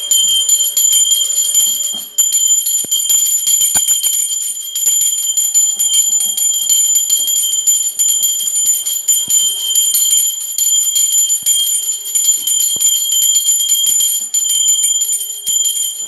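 Small brass hand bell shaken rapidly and continuously, a steady high ringing with fast clapper strikes and a brief break about two seconds in.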